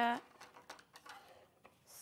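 Small pink embroidery scissors snipping notches into the edge of a quilted fabric piece: a few faint, short snips.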